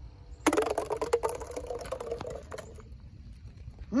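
A metal gate struck with a clang, its bars rattling and a ringing note fading over about two seconds, followed by a few lighter clicks.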